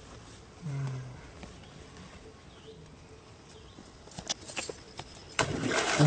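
Monkey splashing and thrashing in shallow pond water, starting with a sharp smack about five and a half seconds in and running loudly to the end. Earlier there is a brief low hum about a second in and a few sharp ticks shortly before the splashing.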